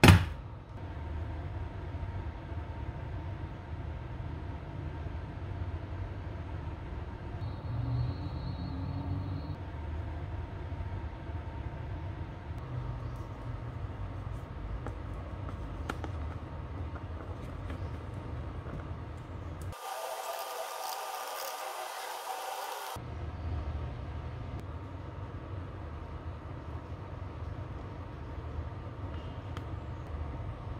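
A sharp snip of tin snips cutting copper-clad board right at the start, then a steady low rumble with a faint hum. About twenty seconds in, the rumble drops out for about three seconds, leaving only a thin hiss, and then returns.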